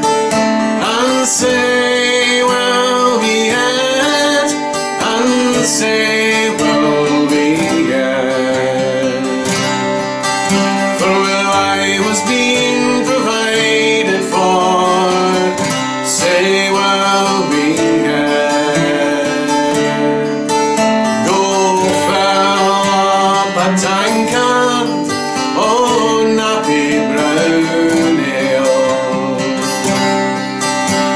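A man singing a traditional Scottish folk song, accompanying himself on an acoustic guitar, at a steady level throughout.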